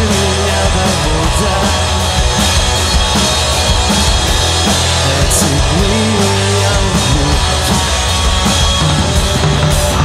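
Live rock band playing loud: electric guitars and bass guitar over a Pearl drum kit with Sabian cymbals.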